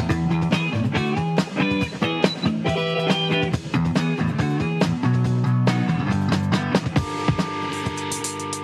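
Jackson RR electric guitar being played in a tone demonstration: a run of picked notes over held low notes. The playing breaks off about seven seconds in.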